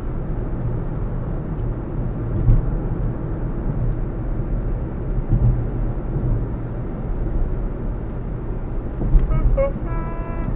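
A car driving at road speed, heard from inside the cabin: a steady low rumble of tyres and engine, with a couple of small bumps about two and a half and five and a half seconds in.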